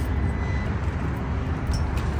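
Steady low rumble of vehicle traffic, with no distinct events.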